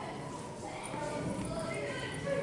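Indistinct background voices, with no single clear speaker.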